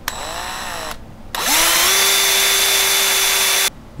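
An electric drill with an 11/64 in. bit drills a shallow dimple into an AR-15 barrel's steel through a guide jig. There is one short burst of under a second, then a louder run of about two and a half seconds whose whine spins up and holds steady before it stops abruptly.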